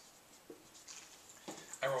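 Felt-tip dry-erase marker writing on a whiteboard: faint scratchy strokes as the figures are drawn.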